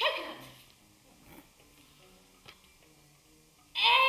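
A performer's voice: a sharp cry right at the start that slides steeply down in pitch, then a quiet stretch with faint low held tones, then loud, swooping vocal calls again near the end.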